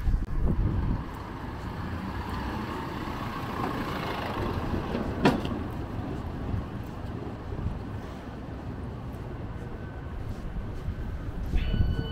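A small truck's engine running as it drives slowly along the street, over a steady street rumble. A single sharp click comes about five seconds in, and a steady high tone starts near the end.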